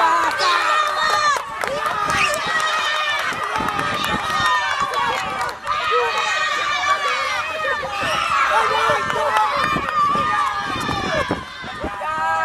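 Several voices shouting and calling out over one another, from players and onlookers during a football match.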